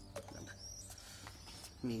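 Faint bird chirps: a few short, high, arching calls, with a couple of soft clicks.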